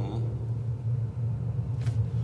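Steady low rumble of mechanical background noise, an imperfect NC35 noise condition, played into the room and made stronger by an electronic acoustics system.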